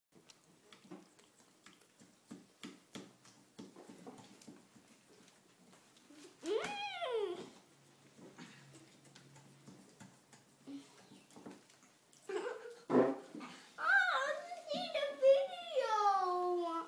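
High-pitched wordless vocal sounds: a rising-and-falling whine about six and a half seconds in, and wavering, squealing glides through the last few seconds, over scattered small clicks and knocks.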